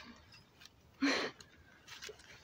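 A person's short breathy exhalation about a second in, starting with a brief voiced note, like a laugh let out under the breath.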